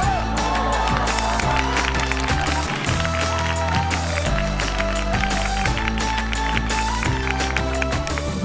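Background music with a steady beat, a sustained bass line and a lead melody.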